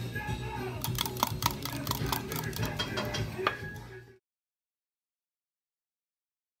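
Wire whisk beating batter in a glass measuring cup, clinking against the glass in rapid, irregular taps. The sound fades and cuts off to silence a little after four seconds in.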